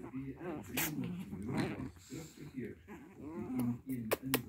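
Pomeranian puppies growling and whining in short, wavering bursts as they wrestle in play.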